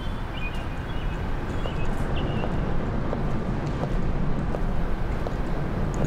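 Footsteps walking on gravel, faint and irregular, over a steady low background rumble.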